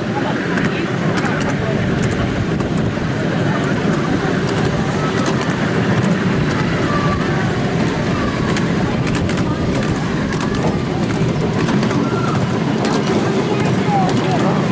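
Miniature steam train under way, heard from a passenger car behind a Flying Scotsman 4472 replica locomotive: a steady rumble of the small wheels on the track with scattered clicks.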